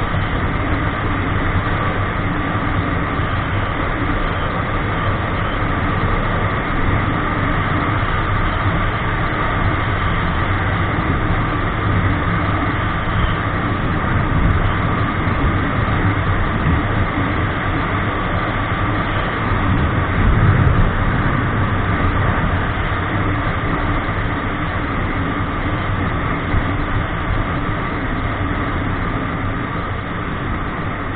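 Motorcycle cruising steadily along the road: a constant engine drone under heavy wind noise, with a brief louder low rumble about two-thirds of the way through.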